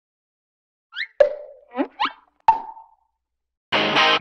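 Cartoon-style bubble pop and bloop sound effects: five short sounds over about a second and a half, quick upward-sliding blips and two sharp pops with a brief ringing tail. Loud music starts suddenly near the end.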